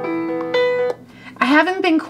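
Looped keyboard track playing back through the PopuPiano app: sustained piano-like chords that cut off suddenly about a second in, followed by a woman's voice.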